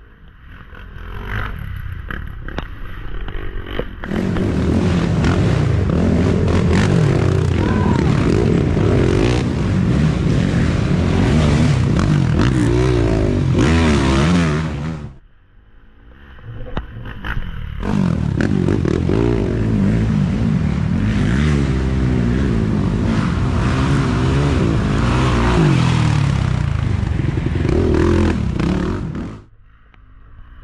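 Racing ATV engines revving hard, the pitch rising and falling with throttle and gear changes, as quads ride along a muddy trail. Two separate loud passes, with a drop-off of a few seconds in between.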